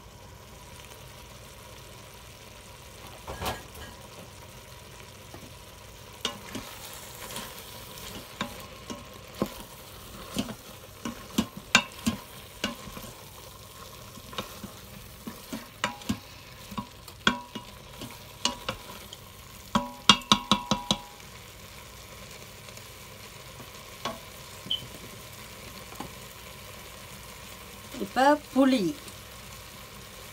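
Wooden spatula stirring and scraping vegetables and shrimp in a stainless steel cooker pot over a low steady sizzle of frying, with scattered knocks against the pot and a quick run of taps about two-thirds of the way through.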